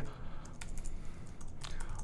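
Typing on a computer keyboard: a run of irregular key clicks as several letters are typed in quick succession.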